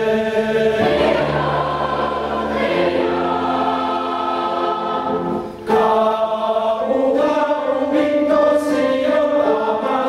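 Mixed choir of women's and men's voices singing in parts, holding long chords. The singing breaks off briefly about five and a half seconds in, then the next phrase begins.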